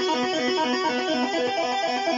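Epiphone Les Paul Prophecy electric guitar played through a Boss DS-1X distortion pedal into a Fender Blues Junior valve amp: a fast run of distorted single notes.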